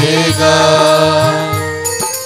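Hindu devotional bhajan (kirtan) music. A sung line trails off just after the start, then steady held instrumental notes continue over a low drone.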